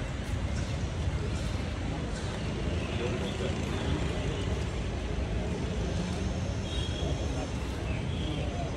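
Street ambience: a steady low rumble of traffic with indistinct murmur of people's voices.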